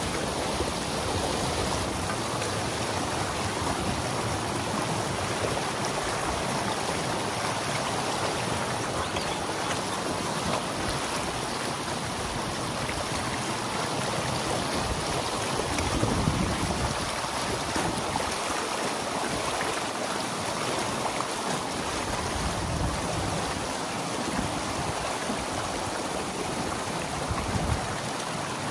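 Water pouring through a breach in a beaver dam, a steady rushing and splashing flow as the pond drains over the gap. It swells briefly louder a little past halfway.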